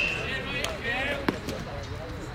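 Voices of players and spectators calling out at a baseball field, with a couple of sharp knocks: one right at the start and one just past a second in.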